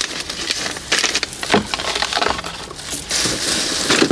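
Plastic bag crinkling and rustling as it is handled, with scattered light knocks and clicks from small objects being moved.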